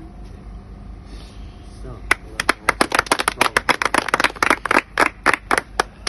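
Hand clapping that starts about two seconds in: a quick, uneven run of sharp claps, thinning out near the end.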